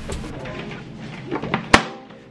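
Hard-shell gun lockbox lid being shut, with one sharp snap as it closes near the end, over quiet background music.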